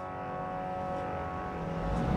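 Car traffic noise fading in and growing louder, as a held synthesized chord dies away beneath it.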